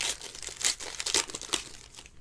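Foil wrapper of a Panini Mosaic basketball card pack crinkling and tearing as hands pull it open, in irregular crackles.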